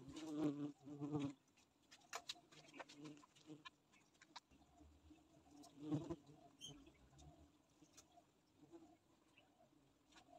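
Faint buzzing of Itama stingless bees (Heterotrigona itama) in an opened hive box as their brood is handled, with scattered small clicks and crackles from fingers working the brood cells and resin. Two short low pitched sounds sit near the start and another comes about six seconds in.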